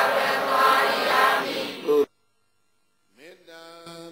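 Many voices of a seated crowd reciting together, cut off abruptly about two seconds in. After a second of silence, one man's voice begins a slow Pali chant with long, steady held notes, quieter than the crowd.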